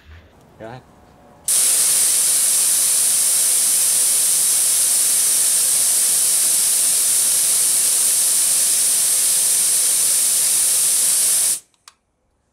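ZEX nitrous perimeter plate spraying nitrous oxide in a timed ten-second flow test: a loud, steady hiss that starts sharply about a second and a half in and cuts off suddenly near the end. The flow is measured by bottle weight to set the nitrous fuel enrichment.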